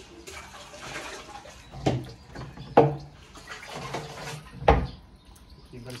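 Water being scooped from a drum and poured from a plastic dipper over an aloe vera leaf into a stainless steel sink, splashing, with three sharp knocks partway through.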